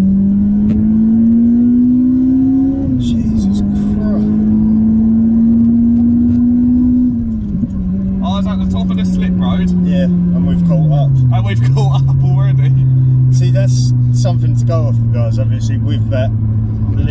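Toyota Corolla T Sport's 1.8-litre VVTL-i four-cylinder engine heard from inside the cabin, accelerating through the gears. Its pitch climbs, drops at a gear change about three seconds in, climbs again and drops at a second change, then falls to a lower, steady pitch about eleven seconds in as the car settles to a cruise.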